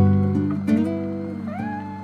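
Soft acoustic guitar music: plucked notes ringing out and fading, with one note gliding upward in pitch near the end.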